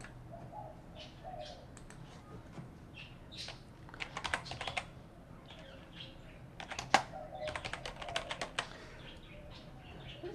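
Typing on a computer keyboard: a short run of rapid key clicks about four seconds in, then a longer run from about seven seconds.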